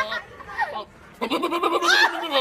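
Goat bleating: one long, quavering bleat that starts a little past a second in and runs to the end, after a quieter first second.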